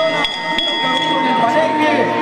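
Men's voices talking over a crowd. Right at the start a steady ringing tone of several pitches sets in and holds for about a second and a half.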